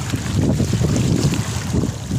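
Wind buffeting the microphone in a heavy, irregular rumble, over small waves washing across a pebble shore.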